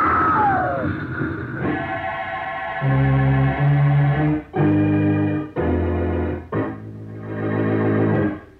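Dramatic radio-drama organ music: a loud series of held chords that change about once a second, building to a close. It opens with a falling screech over a noisy rush in the first second or so, a sound effect from the car crash.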